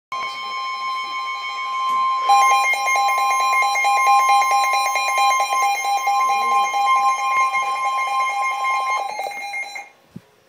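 Two weather alert radios (one a Midland) sounding for a severe thunderstorm warning: the broadcast's long, steady warning-alarm tone, joined about two seconds in by a rapid pulsing electronic beep from a radio. The steady tone stops about nine seconds in and the beeping about a second later.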